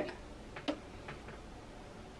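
Low room tone with a few faint, short clicks in the first second and a half, the clearest just under a second in.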